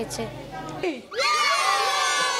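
A group of children shouting a cheer together. It starts suddenly about a second in and is held as one long shout.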